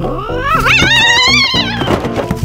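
A cat's long, loud yowl, rising in pitch and then wavering, over organ background music.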